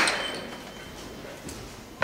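Echo of a voice dying away in a large hall, then quiet hall room tone with a couple of faint clicks.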